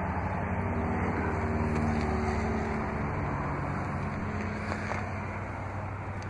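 A car's V8 engine idling steadily, a low even hum with a slight dip in level near the end.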